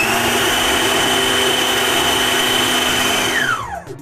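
Electric food processor running a short burst to chop peppers coarsely. The motor starts with a quick rising whine, runs steady for about three seconds, then cuts out and winds down in a falling whine near the end.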